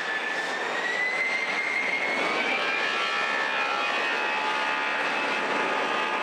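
Jet airliner's engines running on the runway, a steady roar with a thin whine that rises slowly in pitch.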